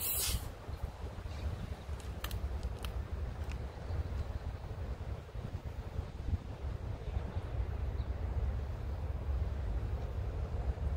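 Wind rumbling on the microphone throughout, with a brief hiss right at the start as a plastic soda bottle's cap is twisted open and the carbonation escapes. A few faint clicks follow two to three seconds in.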